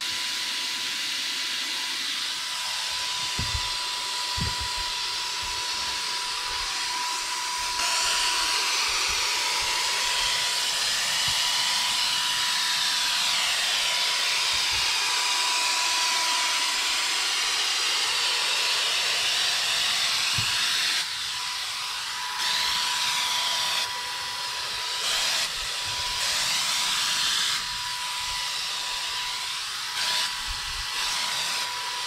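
Wagner Flexio corded electric paint sprayer running, a steady hiss of air and paint with a thin motor whine through it. It gets louder about eight seconds in, and in the last third dips and swells in short spells.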